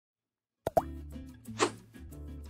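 Logo-intro music sting: after silence, a sharp pop with a quick upward sweep just under a second in, over a steady low synth tone, then a short whoosh about a second later.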